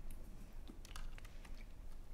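Faint computer keyboard keystrokes: a short cluster of key taps about a second in, as a page number is typed into a PDF viewer.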